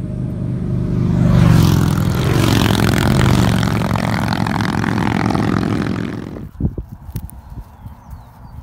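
A group of motorcycles passing close and riding off, the engines loudest a second or two in, their pitch dropping as they go by. The sound cuts off abruptly about six seconds in, leaving a few scattered knocks.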